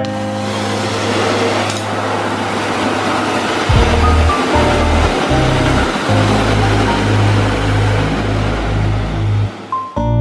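Garden-hose spray nozzle jetting water onto the riveted metal wing of a light aircraft: a steady hiss of spray that fades out just before the end, under background music.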